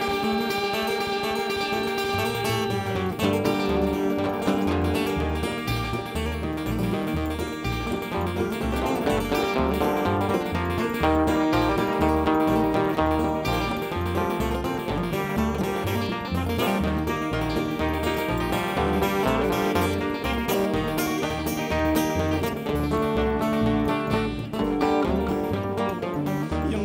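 Live bluegrass-based Americana band playing an instrumental introduction: acoustic guitar and banjo picking over a steady upright bass line, with fiddle.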